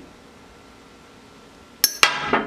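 Brown glass beer bottle cracking apart along the heated ring near the end: one sharp, loud glassy crack with a short ring. The break comes from stress that heating the glass puts into it.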